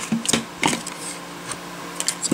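A few light clicks and handling noises from paper and a craft punch being moved on the work table, over a faint steady hum.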